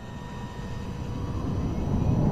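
Low rumbling drone that swells steadily louder, with a few faint steady high tones held above it: soundtrack sound design under the animation.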